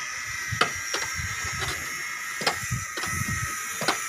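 A few sharp, short knocks, roughly one a second, over a steady high-pitched hiss.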